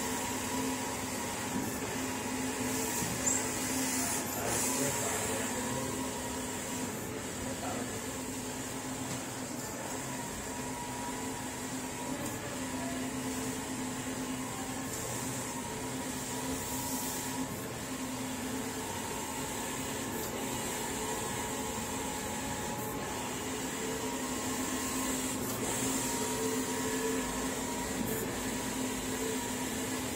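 Wide-format eco-solvent inkjet printer running while printing: a steady hum of its fans and motors, with a faint swish every two to three seconds as the print-head carriage travels across.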